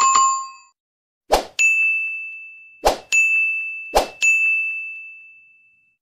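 Sound effects of an animated subscribe end screen: a bell-like ding that dies away quickly, then three sharp pops about a second and a half apart, each followed by a bright ringing chime that fades away, the last one slowly.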